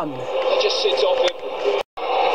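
Television broadcast of a football match: a commentator talking over stadium crowd noise. It drops out briefly near the end.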